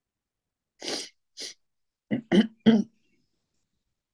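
A person clearing their throat: two short breathy sounds, then three quick harsher voiced pushes about a second later, the last two loudest.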